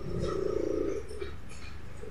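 Plastic laptop case creaking as a flat-head screwdriver pries at the seam of the top cover, a rough creak lasting about a second, followed by a few faint clicks.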